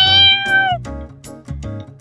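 A cat's single long meow, just under a second, rising at the start and dipping slightly as it ends, over light background music.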